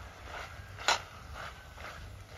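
Seasoned raw chicken and chopped vegetables being mixed by hand in an aluminium pot, with soft wet handling noises and one sharp knock a little under a second in.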